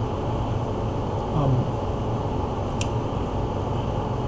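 Steady low background hum like a fan or air conditioner running, with a brief murmured "um" about a second in and a short click near three seconds.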